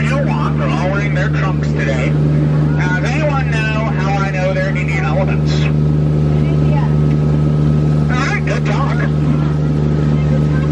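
Steady low drone of a Jungle Cruise tour boat's engine running under way, with a man's voice talking over it in spells.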